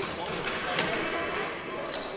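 Basketball gym ambience: a low murmur of spectators in a large echoing hall, with a few sharp knocks on the hardwood court, the loudest shortly after the start.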